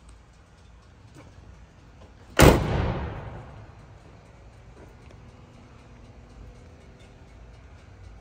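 The driver's door of a 1985 Chevrolet Camaro Z28 slamming shut once, about two and a half seconds in, the thud dying away over about a second.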